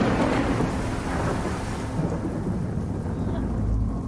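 Thunder and steady rain on a film soundtrack: a loud thunder roll right at the start that fades into a low rumble over the hiss of rain.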